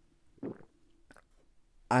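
A person sipping a drink from a mug and swallowing: two short, faint mouth-and-throat sounds, about half a second and about a second in.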